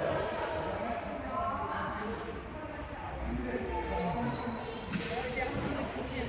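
Indistinct voices of people talking in a large hall, with a few dull thumps like footsteps on a hard floor.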